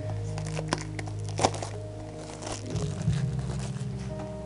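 Background music with steady sustained tones, with the crinkle and rustle of a trading-card booster pack's wrapper being handled and a few sharp clicks over it.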